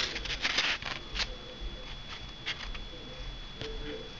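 Hands handling a piece of EPP foam with a control horn glued in: scattered light clicks and scratchy rubbing of foam against fingers, with a brief faint squeak near the end.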